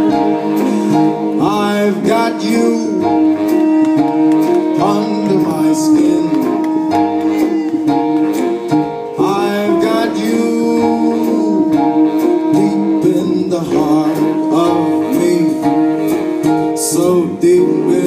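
Live big band playing an instrumental passage of a swing arrangement: held chords over a steady drum beat with cymbal hits.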